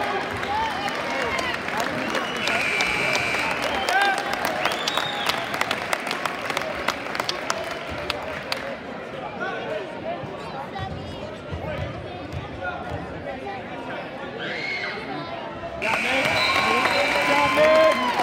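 Crowd chatter and calls from spectators in a school gymnasium during a basketball game, with scattered sharp taps. A steady high tone is heard briefly about two seconds in and again near the end, as the sound grows louder.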